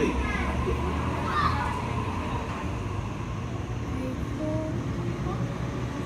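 Double-deck electric suburban train moving along the platform with a steady low rumble, and a few brief steady tones about two-thirds of the way through.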